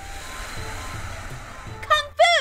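A rushing noise lasting almost two seconds over background music with a steady bass line; the highest part of the hiss thins out near the end.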